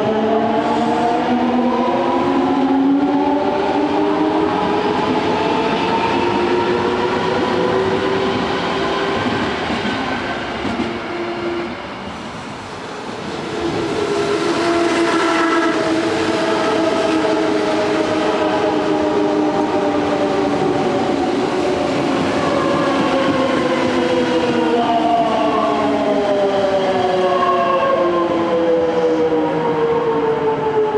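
Odakyu 1000-series electric train running past, its traction inverter whining in several tones that glide in pitch over the rumble of wheels on rail. The whine falls away for a moment about twelve seconds in, then returns and changes pitch again as the train moves off.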